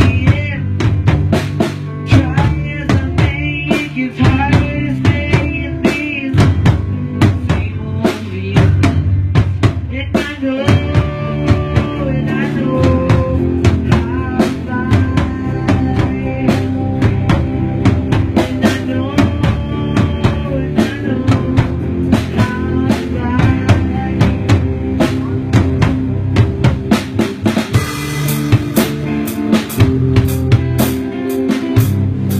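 Instrumental band music driven by a drum kit, with steady snare and bass-drum hits under sustained bass notes and a wavering melodic lead line. A bright cymbal wash swells in near the end.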